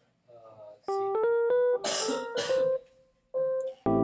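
Electric piano notes from a Logic Pro X MIDI track: a quick run of short notes stepping in pitch, the software previewing each pitch as a note is dragged in the piano roll, then a couple of held single notes. Just before the end, the track starts playing back full chords under the melody.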